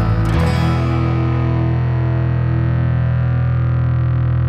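Closing bars of a post-punk rock song: the band's playing stops about half a second in, leaving a distorted electric guitar chord with effects sustained and ringing out, with a slight regular pulse.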